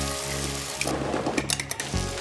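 Eggs sizzling in a frying pan, with a few sharp clicks of kitchen utensils against the pan about one and a half seconds in, over background music with a steady bass.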